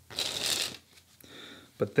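A deck of Fulton's Cinematics playing cards riffled in the hands, a brief fluttering rush of card edges, followed about a second later by a softer sliding as the cards are spread between the hands.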